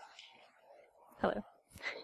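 A quiet pause, then a brief, soft spoken 'hello' about a second in and a short vocal sound just after.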